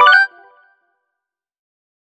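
A short electronic chime: a quick cluster of ringing tones right at the start, dying away within about half a second, followed by silence.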